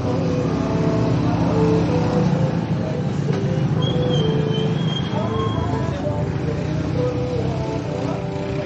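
Background music: a melody of held notes shifting in pitch, with a high thin note about four seconds in, over a steady low rumble.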